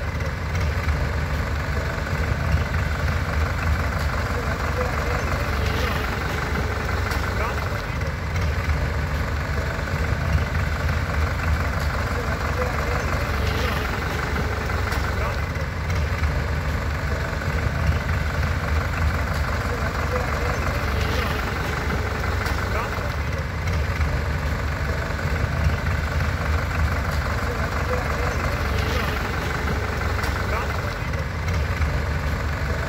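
Diesel tractor engines running steadily at idle and low speed, a continuous low hum.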